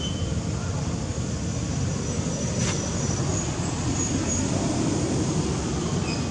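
Steady low rumbling outdoor background noise, with a few faint high chirps and a single sharp click about halfway through.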